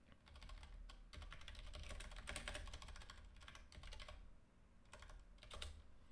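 Faint typing on a computer keyboard: quick runs of keystrokes with a short pause about four and a half seconds in, as code is edited in a text editor.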